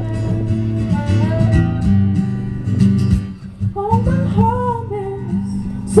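Live folk music: an acoustic guitar plays steadily with violin, and a woman's singing voice comes in about two thirds of the way through.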